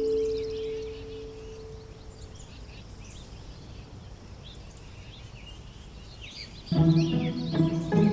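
Birds chirping over a faint steady background hiss of meadow ambience. A held musical chord fades out over the first two seconds, and a new piece of music starts near the end.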